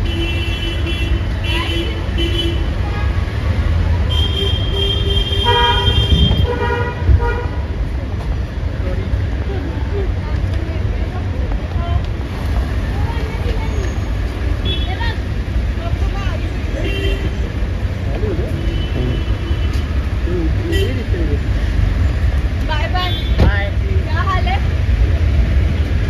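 Busy street traffic with vehicle horns honking repeatedly, the longest and loudest blasts near the start and about four to six seconds in, over a steady low rumble.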